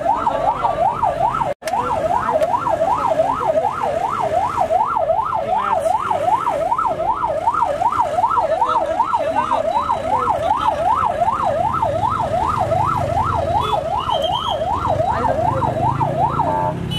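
Police vehicle siren in a fast yelp, its pitch sweeping up and down about two and a half times a second without a break, apart from a momentary dropout about a second and a half in.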